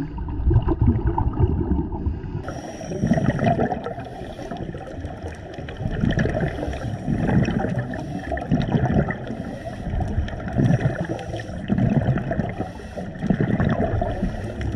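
Muffled underwater water noise picked up through a camera's waterproof housing, swelling in low surges every second or two as the camera moves through the water, with a faint hiss joining about two and a half seconds in.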